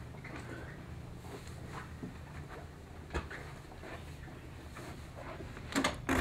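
Faint footsteps and rustling over a low steady hum, then near the end a louder clatter of a glass-paned door being unlatched and pulled open.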